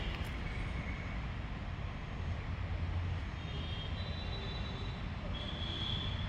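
Outdoor background with a steady low rumble, with a few faint high-pitched chirps about halfway through and again near the end.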